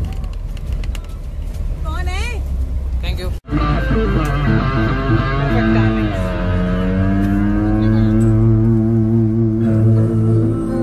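Bus engine rumbling in the passenger cabin with a few voices calling out, then an abrupt cut about a third of the way in to a song with long held notes over a heavy bass.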